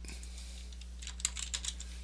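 Computer keyboard typing: a short run of light keystrokes in the second half, over a faint steady electrical hum.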